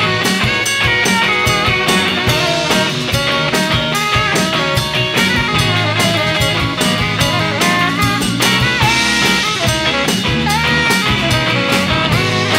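Live rock band playing an instrumental passage: saxophone, electric guitar, bass guitar and drum kit, with a steady drum beat.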